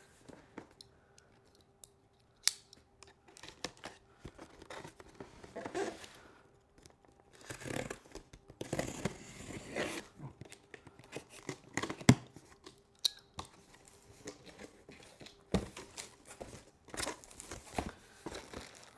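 Packing tape on a large cardboard box being cut and ripped open, in short bursts of slicing and tearing with a few sharp clicks and knocks on the cardboard. The box flaps are pulled open near the end.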